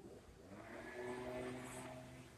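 Faint, distant engine hum that swells about half a second in and eases off near the end, like a motor vehicle going by out of sight.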